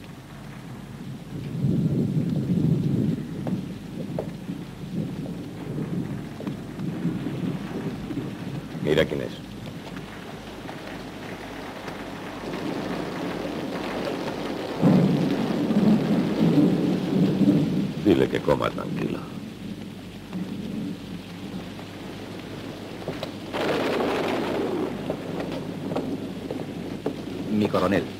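Steady heavy rain with rolls of thunder, the thunder swelling about two seconds in and again, louder, around fifteen seconds in.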